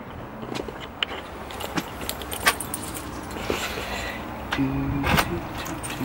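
A bunch of keys jingling and clicking in short irregular clinks while the house key is sought, over a steady low car engine rumble.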